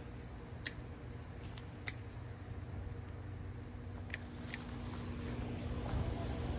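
Hand pruners snipping azalea stems: four short, sharp clicks, the loudest about half a second in, one near two seconds and a pair just after four seconds, over a steady low hum.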